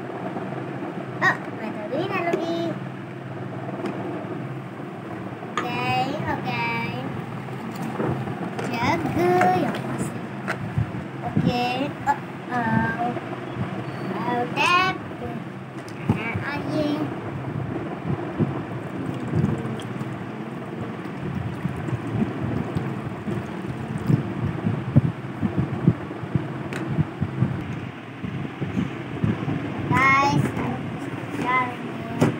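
A young child's high voice exclaiming and babbling at intervals over a steady low hum, with small plastic knocks and clatter through the second half.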